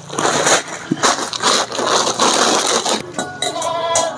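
Crinkling and rustling of plastic packaging being handled, with small clicks and knocks. About three seconds in, it gives way to a short ringing of several steady pitches.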